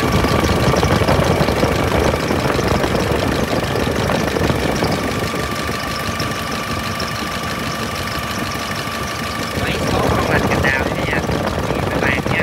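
Nissan ZD30 four-cylinder common-rail diesel engine idling steadily, heard up close from the open engine bay, with a thin steady whine running through most of it.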